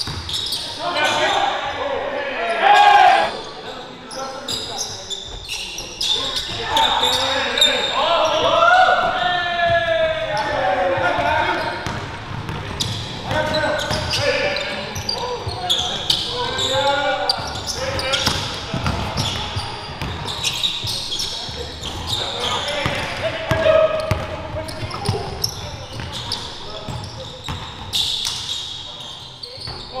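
Live game sound in a gym: a basketball bouncing on the hardwood floor in repeated sharp knocks as it is dribbled, with players' indistinct shouts ringing in the large hall.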